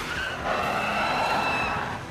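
A car drifting, its tyres squealing in a long steady screech.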